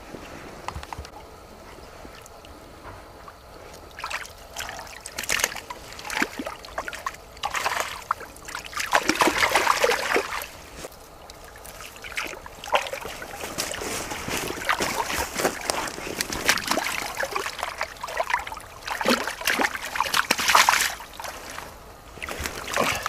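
Irregular splashing and sloshing of hands and a hand net in a shallow, muddy puddle as fish are grabbed and scooped out. The splashes come in uneven bursts, busiest in the second half.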